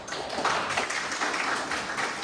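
Congregation applauding: many hands clapping in a dense, irregular patter at a fairly even loudness.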